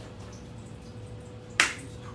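A single sharp click or knock about one and a half seconds in, over a steady low background noise with a faint hum.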